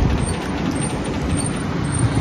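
A car coming up from behind and drawing alongside: steady road noise with a low rumble, heard from a moving bicycle.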